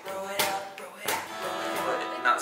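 Cutaway acoustic guitar struck twice, about a second apart, its strings ringing on after each hit.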